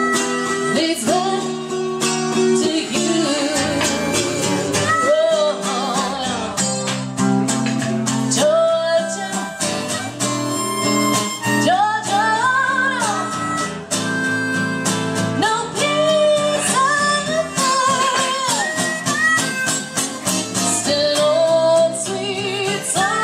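Live acoustic music: a steel-string acoustic guitar accompanying a woman singing, with a harmonica played in cupped hands partway through.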